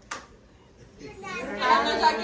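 A short click, a brief lull, then a group of adults and children talking over one another, voices building through the second half.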